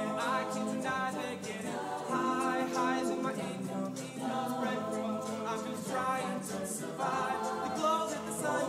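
High school chamber choir singing a cappella, several voice parts sounding together in harmony.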